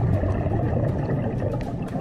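Steady low rumbling noise with faint scattered clicks, like the ambient sound of an underwater recording on a coral reef.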